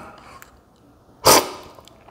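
One loud, sharp slurp of brewed coffee off a cupping spoon, about a second in, lasting a fraction of a second. It is the forceful slurp used in cupping to spray the coffee across the palate for tasting. A couple of faint clicks come before it.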